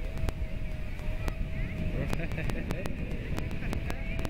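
Wind rumbling on the microphone over a steady, distant single-note hum from the engine of a radio-controlled model airplane flying overhead, with scattered sharp clicks.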